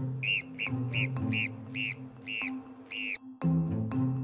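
Golden marmot giving a run of seven short, sharp alarm calls, about two a second, over soft background music.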